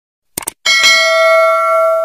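Subscribe-button sound effect: a quick double mouse click, then a loud bell ding that rings on steadily with several tones.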